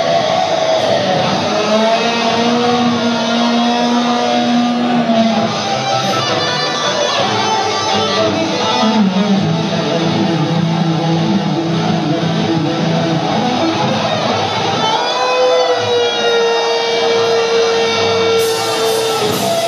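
Live heavy metal band playing loud through a PA, an electric guitar leading with long held, bending notes over the band.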